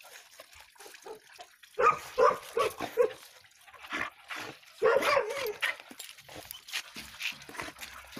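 Dogs barking in short pitched bursts: a quick run of four or so barks about two seconds in and another cluster around five seconds, with fainter yips later.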